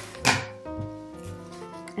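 Scissors snipping through a plastic Mardi Gras bead strand: one short, sharp cut about a quarter second in, over background music with steady held notes.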